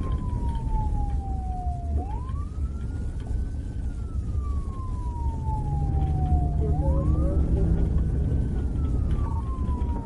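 Police siren on the wail setting, its pitch rising quickly and falling slowly in cycles of about four and a half seconds, over the steady low rumble of the car it is mounted on.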